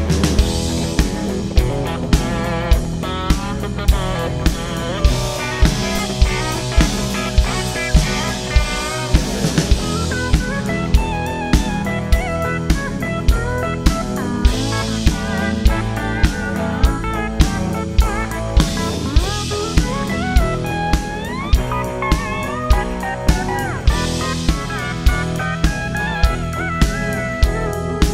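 Drum kit, a Gretsch Renown Walnut kit with a 20-inch bass drum, played live along with a recorded country song in an instrumental break: a steady beat of about two hits a second under a guitar lead with bent, sliding notes.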